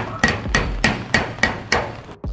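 Body hammer tapping a dent out of a VW Beetle's curved steel roof panel: quick, even strikes about three a second, each with a short metallic ring.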